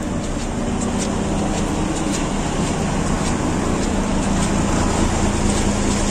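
Heavy truck's diesel engine idling with a steady low hum, under a constant hiss of rain.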